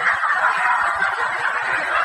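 Audience laughing together, a steady wash of many voices laughing at once.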